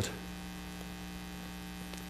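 Steady electrical mains hum: a low, even buzz with evenly spaced overtones.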